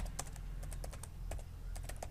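Computer keyboard being typed on: a quick, irregular run of key clicks as a phrase is typed out.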